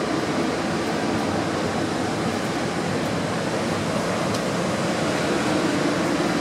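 Ocean surf breaking on the beach below, a steady rushing noise, with a low steady hum underneath.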